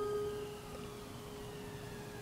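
A single held ringing tone from a horror short film's soundtrack. It dies down in the first half second, then holds faint and steady, with fainter higher tones drifting slowly above it.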